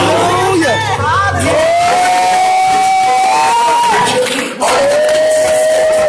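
Church congregation shouting and cheering in praise, with one voice holding long, drawn-out shouted notes over the noise, twice.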